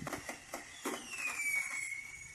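Puppies lapping gruel from a shared bowl: soft, wet licking and small clicks. A faint high tone slides down and then holds steady about a second in.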